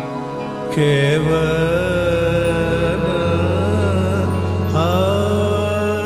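Male Hindustani classical singer holding long, wavering, ornamented notes in two phrases, the second beginning near the end, accompanied by a swarmandal and low sustained notes.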